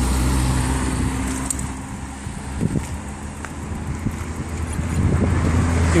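Road traffic: the low hum of passing car engines, louder at the start and building again near the end.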